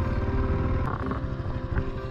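Motorcycle engine running as the bike rolls slowly, with a dense low pulsing. Music plays over it.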